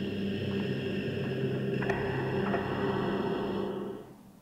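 A synthesized drone of several steady held tones, the audio of a logo sting, at an even level until it cuts off shortly before the end, with a faint click about two seconds in.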